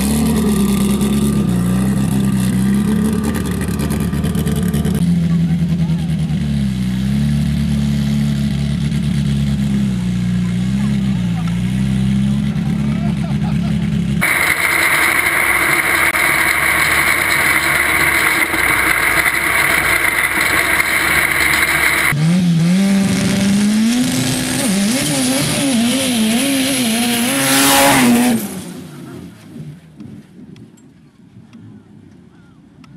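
Sand drag buggy engine running with a wavering, lumpy note. A stretch of onboard sound follows, with a loud steady hiss. Then the engine revs climb steadily under throttle for about six seconds and cut off abruptly near the end.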